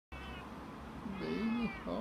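Domestic cat meowing: a faint short mew near the start, then a longer meow about a second in, with another beginning just before the end.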